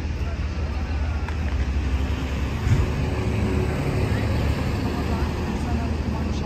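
A bus engine running with a steady low rumble that builds and is loudest around the middle, over faint voices of passers-by.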